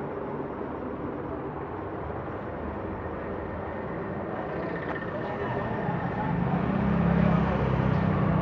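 Steady background noise with faint, indistinct voices, growing louder over the last few seconds.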